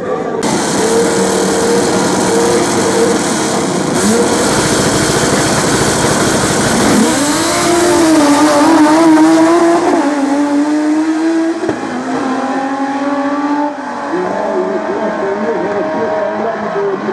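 Two drag-racing cars at full throttle down a quarter-mile strip: loud engines running hard, the engine note dipping and climbing again several times as they pull away.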